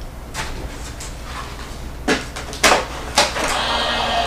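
Clear plastic cutting plates being handled and knocked together, with several sharp clacks, then an electric die-cutting machine's motor starts and runs steadily near the end.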